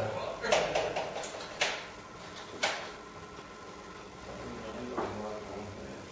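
Faint, indistinct voices with several sharp knocks or clicks in the first three seconds.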